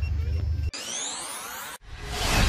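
A low, steady engine hum cuts off suddenly under a second in. A synthesized rising sweep from a logo animation's sound effect replaces it, climbing steadily and stopping abruptly near the end.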